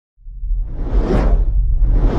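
Cinematic whoosh sound effects over a deep bass rumble, coming in suddenly out of silence: one swell peaks about a second in, and another builds near the end.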